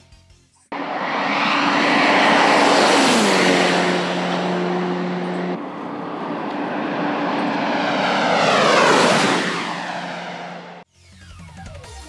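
A tuned Nissan S14 Silvia on a top-speed run passing at high speed twice, engine and wind loud. On the first pass the engine note drops in pitch as it goes by. The second pass rises in pitch and then falls steeply, and the sound cuts off abruptly near the end.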